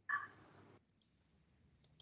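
Mostly quiet, with a short faint sound at the start and two small sharp clicks, one about a second in and one near the end: computer mouse clicks.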